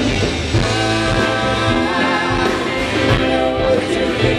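Live rock band playing, with electric guitars, bass and drums under a singing voice.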